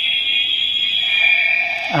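Memorial Edition Gabu Revolver toy sounding from its speaker by itself, with no button pressed: a steady high-pitched electronic tone with a slight waver.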